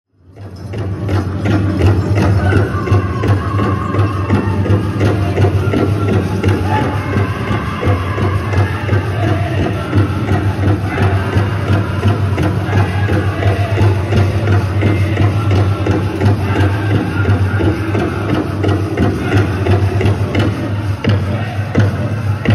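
Powwow drum group playing a jingle dress contest song: a steady drum beat with voices singing, fading in at the start, heard in a large indoor arena. The metal cones on the dancers' jingle dresses add a rattle.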